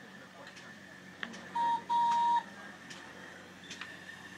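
GWR pannier tank 0-6-0 steam locomotive sounding its whistle: two blasts on one clear high note, a short toot and then a longer one.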